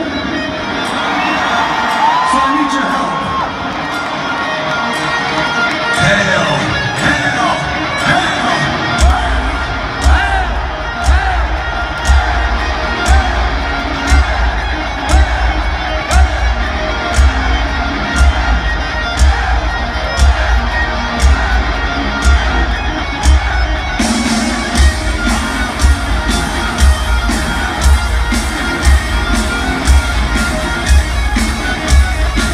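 Stadium crowd cheering and whooping at a rock concert. About nine seconds in, a heavy kick-drum beat starts, roughly one beat a second, with the crowd over it. About two-thirds of the way through, the band's sound grows fuller.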